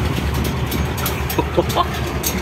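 MAN military truck's Deutz air-cooled V8 diesel running at idle just after starting, a steady low rumble heard from inside the cab.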